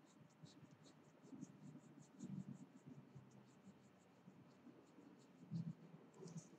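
Pencil shading on paper: faint, quick scratchy strokes, about four or five a second, with a few soft low bumps.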